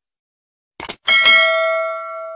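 A quick mouse-click sound effect, then a bright bell ding that starts about a second in and rings out, fading slowly.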